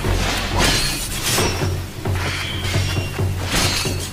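Katana blades clashing and swishing in a sword fight, several sharp metallic strikes over dramatic background music.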